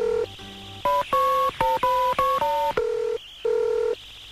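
Hardcore techno track in a drumless breakdown: a melody of short electronic beeps, usually two steady tones at once, stepping between pitches several times a second. It drops quieter twice, just after the start and about three seconds in.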